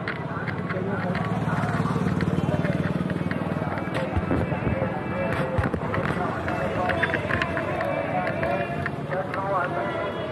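Busy night street ambience: background chatter of passers-by with passing traffic, a low vehicle engine hum swelling over the first few seconds, and scattered clicks and knocks.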